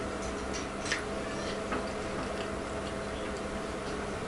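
A few light, irregular clicks of chopsticks against a tableware rice bowl as food is scooped up, over a steady electrical hum.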